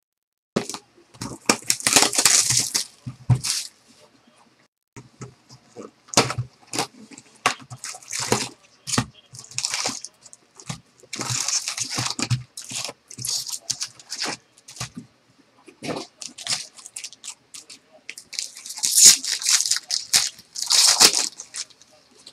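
A cardboard trading-card box being torn open and its foil-wrapped card packs pulled out and handled: irregular tearing, crinkling and clattering, loudest in a few bursts of a second or two near the start, around the middle and near the end.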